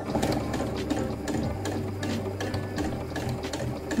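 Domestic electric sewing machine running steadily, stitching fabric-covered piping cord with a zipper foot, with a rapid, even mechanical ticking over a low motor hum.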